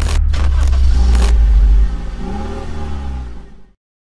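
Animated-logo sound effect: a loud, deep engine-like rumble with four sharp hits in the first second and a half. It weakens about two seconds in and cuts off suddenly shortly before the end.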